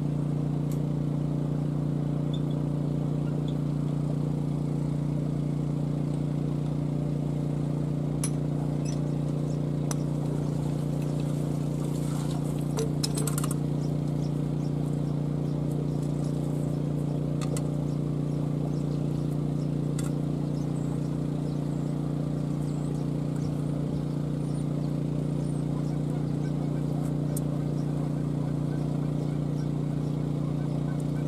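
A running motor's steady low hum, unchanging throughout, with a few light metallic clicks and knocks from hands working a metal pipe fitting.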